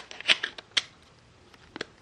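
Plastic battery cover of a Samsung Galaxy Ace being pressed onto the phone's back and snapping into place. There are a few sharp clicks in the first second, the loudest about a third of a second in, then two more quick clicks close together near the end.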